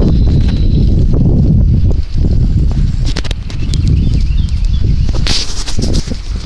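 Wind buffeting the microphone of a handlebar-mounted phone as a bicycle rolls along pavement, a steady low rumble, with the bike and camera mount rattling in a run of small clicks and knocks. A brief louder rush of noise comes near the end.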